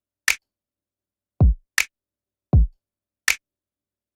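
Programmed drum loop of a kick and a snap sample, run through the UAD Distressor plugin with its distortion blended in parallel. Three short, bright snaps alternate with two deep kicks that fall in pitch, with silence between the hits.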